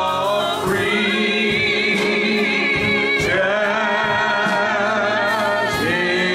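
A small group of gospel singers with keyboard accompaniment singing long held chords with vibrato, the harmony moving to a new chord about every two to three seconds.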